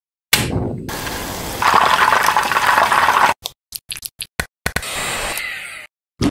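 Chicken pieces deep-frying in hot oil: a loud, continuous sizzle that swells about a second and a half in. It breaks into a few short separate sounds and then settles into a steadier sizzle near the end.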